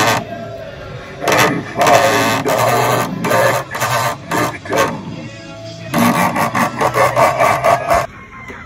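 A Halloween animatronic prop playing its recorded sound track: loud music mixed with a voice, coming in on-and-off bursts.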